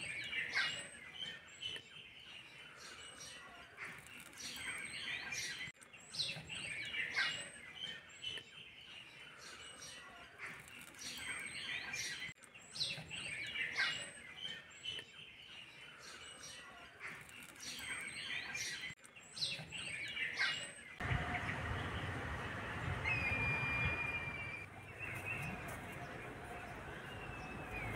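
Small birds chirping and calling in quick, high sweeping notes; the same stretch of birdsong repeats about every six and a half seconds. About three-quarters of the way through it gives way to a fuller background hum with a single short whistle.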